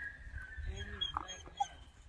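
A dog whimpering faintly: a thin, high whine, with a few short pitched sounds about halfway through.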